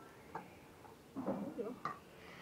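A soft knock, then a short burst of a person's voice, ending in a sharp clink near the end, like a dish or basin being knocked.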